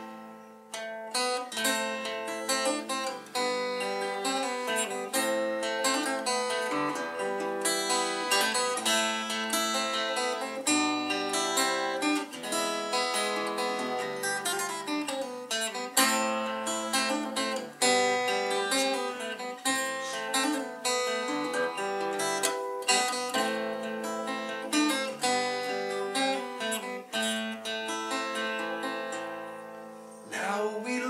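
Acoustic guitar played alone in an instrumental passage: a steady, unbroken flow of plucked notes and strummed chords, with no singing.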